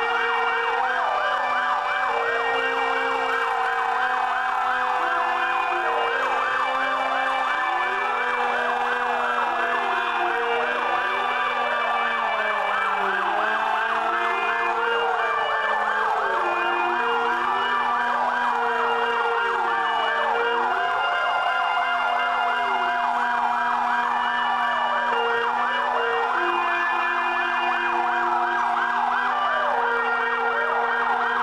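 Several sirens wailing together, their pitches rising and falling out of step over steady held tones, sounding for the two-minute silence at 09:05 on 10 November that marks the moment of Atatürk's death.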